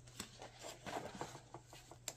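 Sheet music and a music book being handled on a music stand: a scattered string of faint paper rustles and light ticks.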